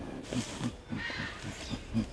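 Short, irregular ape-like grunts mixed with a light rustle.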